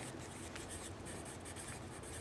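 Faint scratching of a writing tip on paper as a word is handwritten on a journal sheet, over a steady low hum.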